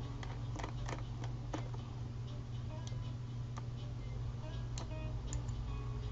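Irregular computer mouse and keyboard clicks, some seven or eight in all, over a steady low hum, with faint music in the background.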